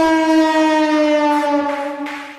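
Siren sound effect used as a break in a DJ remix: one long held siren tone, with no beat under it, that sags slightly in pitch and fades out near the end.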